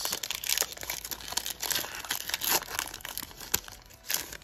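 Foil wrapper of a Yu-Gi-Oh! Judgment of the Light booster pack crinkling and tearing as it is pulled open by hand: a run of irregular crackles that thins out near the end.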